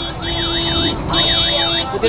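An electronic alarm-style warble that sweeps quickly up and down in pitch several times a second, broken briefly about a second in, over a steady electronic drone.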